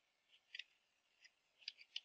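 Faint keystrokes on a computer keyboard: a few scattered clicks, a pair about half a second in and a few more near the end, as Enter is pressed several times and a command is begun.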